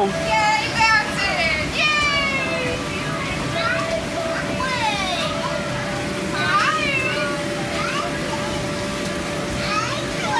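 Young children shouting and squealing at play in an inflatable bounce house, high cries coming in short bursts. Underneath is a steady, unbroken hum of the kind the bounce house's air blower makes.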